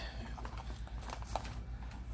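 Scattered light clicks and taps of a plastic servo connector and its wires being worked through a too-small hole in a plastic container lid, over a steady low hum.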